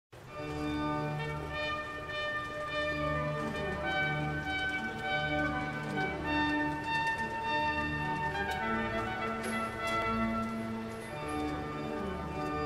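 Music: sustained chords and a slow melody over a regular pulsing bass.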